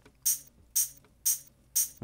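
A plain, dry programmed hi-hat pattern from a drum track, with no effects on it: short, bright ticks about two a second, four in all.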